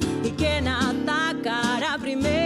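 A woman singing a song while accompanying herself on acoustic guitar, her voice wavering in pitch on held notes over the strummed chords.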